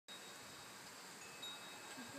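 Quiet outdoor background with a few faint, thin, high ringing tones that hold for a moment and fade.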